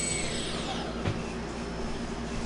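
Quadcopter's four brushless electric motors whining at low throttle, then spinning down in the first second, their high-pitched whine sliding down and fading out. Their speeds are nearly matched across the four motors. A faint click comes about a second in.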